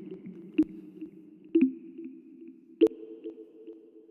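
Synthesizer chords from FL Studio's FLEX synth, played from a phone's on-screen piano keyboard. The notes are held, and the chord changes twice. A sharp click comes in roughly once a second as new notes start.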